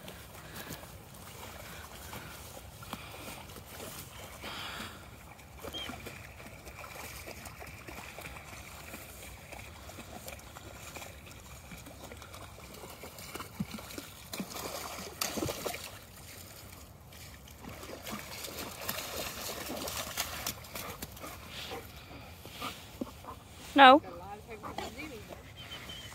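Alaskan malamutes wading through the shallow edge of a lake, water sloshing and splashing around their legs, with louder splashes past the middle.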